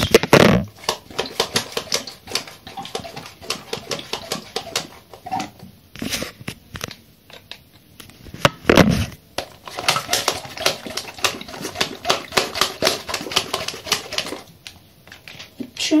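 Plastic toy water pistol's trigger clicked over and over in quick runs, several clicks a second, with a couple of louder knocks; the gun is not shooting.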